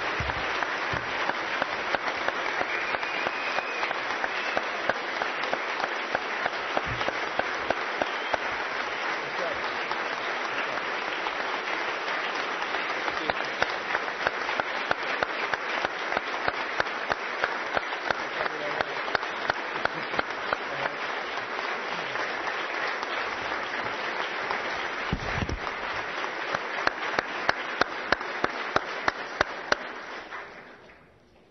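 Sustained applause from a large audience, a dense patter of many hands. One close clapper stands out at times with steady claps about twice a second, and the applause dies away at the very end.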